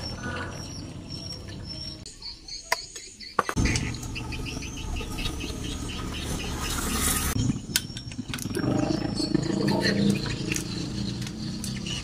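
Light metallic clicks and taps from hands working on a motorcycle engine's cylinder head and bolts. A short hiss comes midway, and a faint murmur comes near the end.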